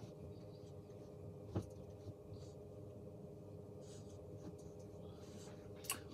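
Quiet room with a low steady hum, and soft puffing and small lip clicks as a man draws on a tobacco pipe: one click about a second and a half in and a sharper one near the end.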